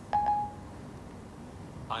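The iPhone 4S's Siri chime sounds from the phone's speaker about a tenth of a second in: one short, single-pitched electronic beep. It marks that Siri has stopped listening to the dictated message and is processing it.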